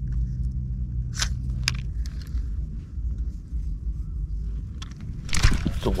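Low rumble of wind on the microphone while an angler holds a spinning rod and reel as a snakehead runs with the bait. Two sharp clicks from the reel being handled come about a second in. A loud rush of noise comes near the end as the rod is swung to set the hook.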